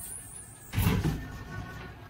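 A room door being pushed shut: one short, noisy sound a little under a second in.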